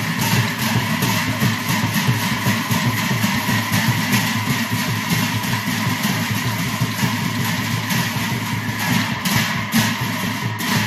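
An ensemble of large brass hand cymbals (Assamese bhortal) clashing together in a fast, steady rhythm, with drums beating along.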